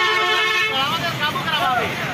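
A vehicle horn held in one long steady blast that cuts off under a second in, followed by men's voices.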